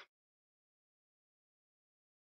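Near silence: the audio is gated to nothing between speakers.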